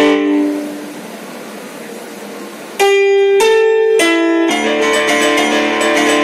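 Digital stage piano playing an instrumental piece: a phrase dies away into a pause of about two seconds, then three loud chords struck about half a second apart and held, before flowing playing resumes.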